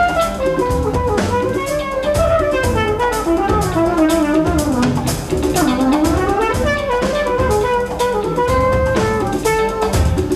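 Trumpet playing a jazz solo line over a small band with drum kit and guitar. The line runs down through the middle and climbs back up near the end.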